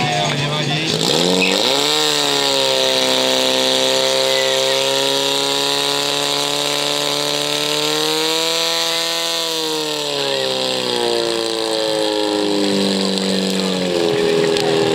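Portable fire pump engine revving up hard about a second and a half in and holding at high revs while it drives water through the hose lines to the nozzles, then dropping back to a lower idle after about ten seconds and starting to rise again at the end.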